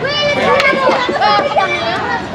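Children's voices talking and calling out over one another, high-pitched and overlapping.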